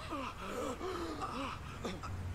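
A man's pained gasps and groans in a TV drama soundtrack, with a short sharp knock near the end.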